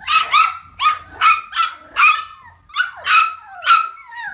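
Puppy barking: a run of about eight sharp, high-pitched barks, roughly two a second.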